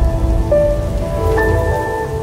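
Logo sting music: held synth tones over a low rumbling wash. A new note comes in about half a second in, and a higher one near the end.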